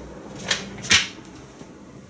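A printed sheet of paper being lowered and set down: two short, sharp rustling knocks about half a second apart, the second trailing off briefly.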